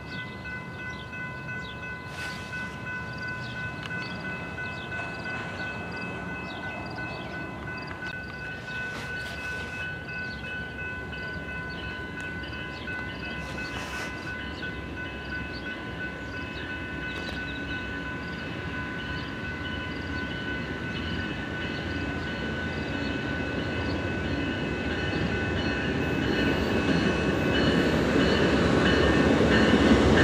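A grade-crossing bell ringing steadily, while an approaching passenger train led by twin GE P42DC diesel locomotives grows steadily louder and is loudest near the end as it pulls in.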